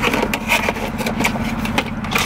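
Clear plastic packaging crackling and clicking as it is handled, over the steady low hum of a car engine idling, heard inside the car's cabin.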